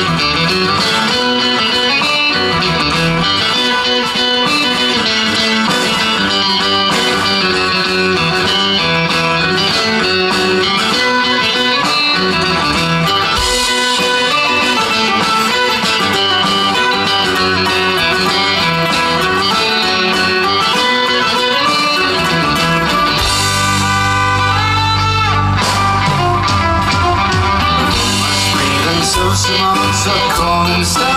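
Live folk-rock band playing an instrumental passage, led by electric guitar with fiddle and drums. About three-quarters of the way through, a heavier, deeper bass part comes in.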